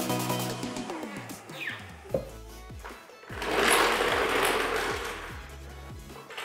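Background music, with a loud rattling noise for about two seconds in the second half: a Craftsman floor jack being let down and rolled out from under the car on its wheels.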